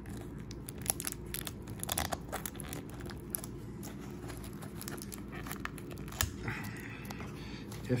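Fingers and nails picking and scratching at cellophane shrink-wrap on a cardboard trading-card box, with scattered small crackles and crinkles from the plastic.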